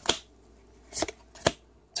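Pokémon trading cards being flicked through by hand, one card slid behind another: four short, sharp snaps of card stock spaced across two seconds.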